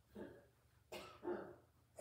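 A person coughing faintly: a few short coughs in about two seconds.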